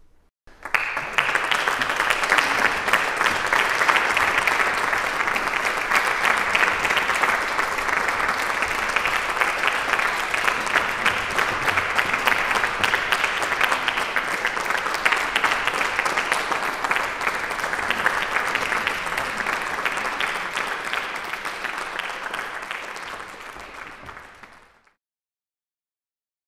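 Audience applauding: dense, steady clapping that starts abruptly, holds level, thins out near the end and then cuts off suddenly.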